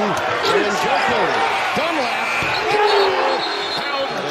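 Live basketball game sound in an arena: a ball being dribbled on a hardwood court, with crowd noise and overlapping voices and a few short squeaks.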